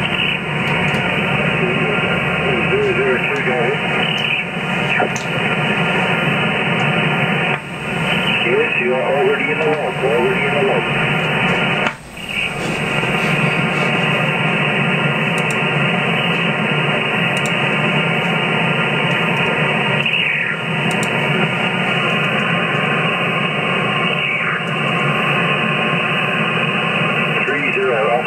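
HF transceiver's speaker on 27.590 MHz upper sideband: a steady hiss of band noise, cut off above about 3 kHz by the receive filter, with faint, garbled sideband voices drifting in and out and a few brief dips in level.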